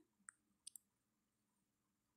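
Near silence, broken by three faint, short clicks in the first second.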